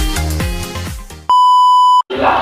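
Electronic dance music with a pulsing bass beat fading down, then, just past a second in, a loud, steady electronic beep tone cuts in and stops abruptly.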